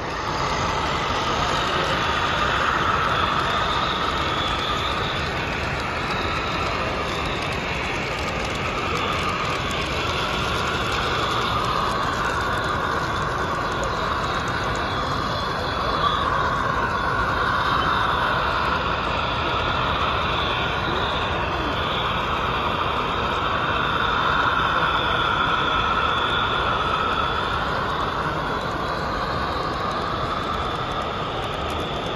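Model freight train running on a layout: a steady mechanical drone from the locomotives' motors and the wheels on the track, with slowly wavering higher tones. There is a short click about halfway through.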